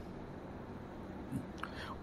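A pause in a man's speech: faint steady background hiss, with a soft breath and small mouth sounds near the end.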